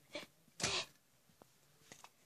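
A person sneezing once: a short intake about a quarter-second in, then the loud sneeze a little over half a second in. Faint clicks follow.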